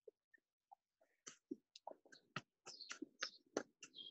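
Near silence, broken by faint, irregular short clicks and taps.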